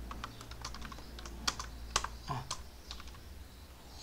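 Typing on a computer keyboard: irregular key clicks, with a couple of louder keystrokes about one and a half and two seconds in, over a faint low steady hum.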